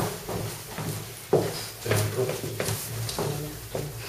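Acoustic piano playing spaced chords in a bossa nova accompaniment, about six struck chords, each ringing and fading before the next.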